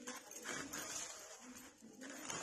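Georgette saree fabric rustling and swishing in irregular bursts as it is shaken out and handled.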